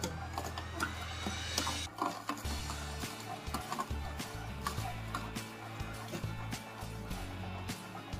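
Vertical slow juicer's auger crushing a carrot pushed down its feed chute, with many irregular cracks and creaking clicks.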